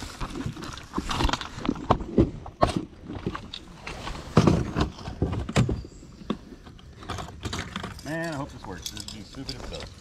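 Close handling noise of fishing tackle: irregular clicks, taps and rustling as a large soft-plastic swimbait with metal hooks and a snap is handled near the microphone, with a few louder knocks around the middle.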